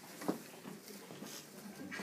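Quiet classroom background: faint low voices and small movements, with a short knock about a third of a second in.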